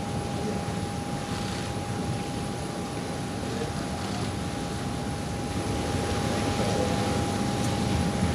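Jet aircraft engines running steadily: a broad rush with a constant whine, growing slightly louder toward the end.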